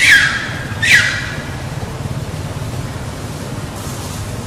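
Macaque calls: two short shrill screeches, each falling in pitch, in the first second. After them comes a steady background hiss.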